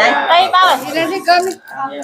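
Speech only: a person talking in Vietnamese.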